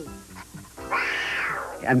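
Cartoon cat meow sound effect, one call about a second long, over soft background music.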